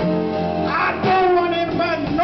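Live blues band playing, with electric guitar to the fore over bass and drums.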